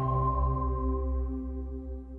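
Electronic TV station jingle for the start of a commercial break: held synth tones over a deep low drone, fading out steadily.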